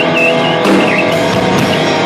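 Live rock band playing loudly: electric guitars over a drum kit.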